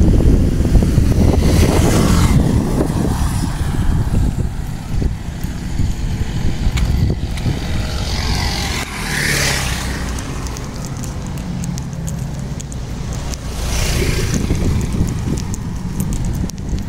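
Road traffic, motorcycles among it, passing over a heavy steady low rumble. It swells louder about two, nine and fourteen seconds in as vehicles go by.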